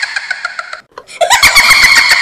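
Cartoon monster's scream sound effect: a very loud, high shriek with a fast rattle running through it. It breaks off almost to silence just under a second in and starts again about a second in.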